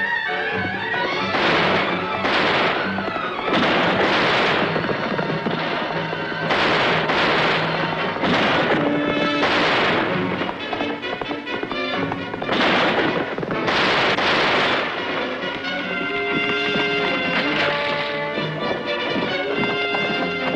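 Orchestral film score under a run of about eight revolver shots, each a sudden loud crack with a short echoing tail, spread over the first fifteen seconds; after the shots the music carries on alone with held notes.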